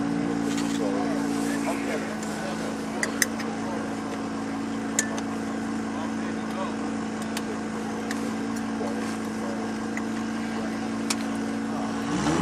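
A steady engine idle whose pitch steps slightly lower about two seconds in, with a few sharp metallic clicks of a racing safety harness being buckled and adjusted.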